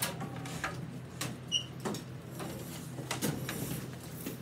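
Classroom desk noise of students handling small whiteboards and markers: scattered light clicks and knocks, with one brief squeak about a second and a half in.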